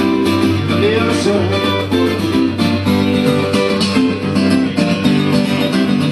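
Acoustic guitar strummed steadily in an instrumental passage of a live song.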